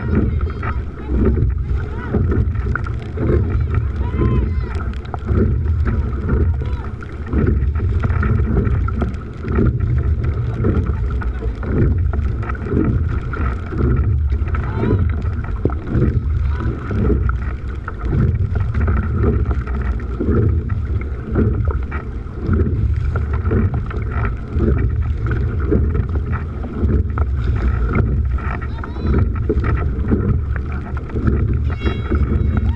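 Wind buffeting the microphone and water rushing along a rowing boat's hull, with the sound swelling in a steady rhythm about every two seconds as the four scullers take their strokes.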